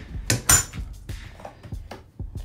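Metal door hardware of a race trailer clanking: two sharp clanks about half a second in, the second the loudest with a short ringing tail, followed by lighter clicks and knocks.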